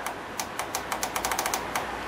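A quick run of about a dozen small clicks from an ultrasonic cleaner's timer button being pressed over and over, faster in the middle, as the timer is stepped up.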